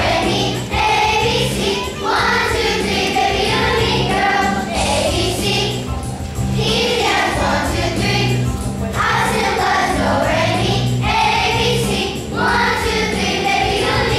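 Children's choir singing in phrases of about two seconds, over an instrumental accompaniment with a steady bass line.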